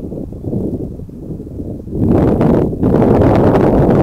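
Wind buffeting the microphone: a rough low rumble that gets louder about two seconds in.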